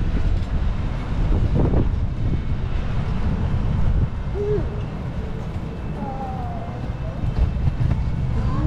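Wind buffeting the microphone: a loud, rough low rumble that eases a little about halfway through. A few faint, short wavering tones come through it in the second half.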